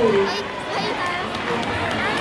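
Large crowd of students talking and calling out at once, a steady din of many voices; the cheer music's last note slides down and ends just at the start.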